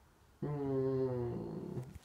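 A man's drawn-out, wordless thinking sound: one held, level vocal tone lasting about a second and a half, starting about half a second in and sagging slightly in pitch toward its end.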